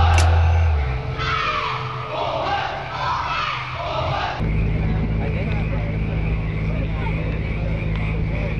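Music from a live stage dance show with heavy bass, giving way about a second in to a group of voices calling out together. About four seconds in the sound cuts abruptly to a steady low hum with faint background noise.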